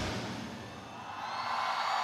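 Live pop concert music stops and its sound dies away in the arena's reverberation. A softer sustained sound then swells up again in the second half and cuts off suddenly at the end.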